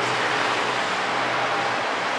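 Street traffic noise: a steady rush with a low vehicle engine hum that fades away near the end.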